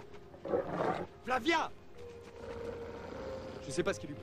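A dog snarling and growling in two short bursts within the first second and a half, an aggressive warning.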